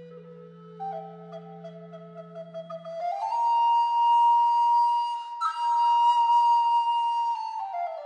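Recorder quartet playing slow, overlapping long notes. A low held tone stops about three seconds in. A loud high note then rises into place and is held for about four seconds, broken for an instant midway, before the lines step down again near the end.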